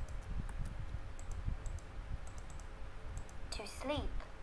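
Computer keyboard keys clicking as a short answer is typed, about a dozen quick taps. Near the end a short warbling tone sounds as the app accepts the answer as correct.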